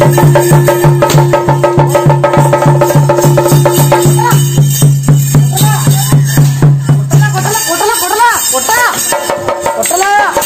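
Theyyam percussion ensemble of drums and cymbals playing a fast, steady, driving beat, which thins out about three quarters of the way through. In the last couple of seconds, a few rising-and-falling calls are heard.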